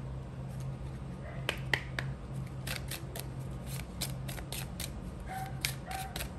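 Tarot card deck handled and shuffled by hand: a run of dry card clicks that starts sparse and grows busier about halfway through, over a steady low hum.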